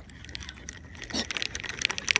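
Irregular light clicks and small metallic rattles from a spinning reel and rod being handled as the rig is twitched close in.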